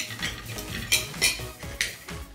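Knife and fork scraping and clinking on a ceramic plate while cutting food, in a few sharp strokes; the loudest come about a second in and just before the end.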